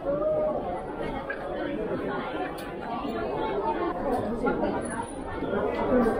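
Chatter of many people talking at once, a continuous hubbub of overlapping voices with no single voice standing out.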